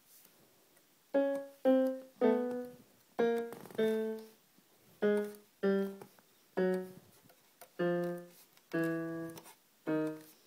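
Electric piano played one note at a time: after about a second of quiet, roughly ten single notes, each left to fade, stepping gradually down in pitch.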